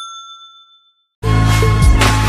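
A single bright chime, the bell sound effect of a subscribe-button animation, rings and fades away over about a second. Then loud music with a heavy bass comes in abruptly a little over a second in.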